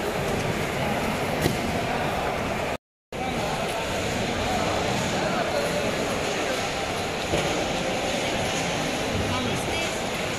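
Fish market hall ambience: indistinct chatter over a steady wash of background noise, broken by a brief drop to silence about three seconds in.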